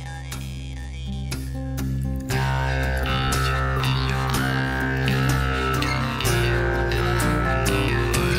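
Jew's harp playing a tune: a steady low drone with a changing overtone melody above it. About two seconds in it gets louder and settles into a steady twanging rhythm.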